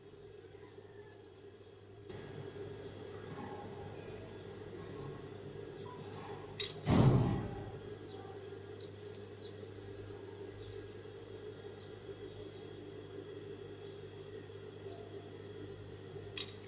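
Steady low electric hum that comes on about two seconds in, with a sharp click and a short thump about seven seconds in.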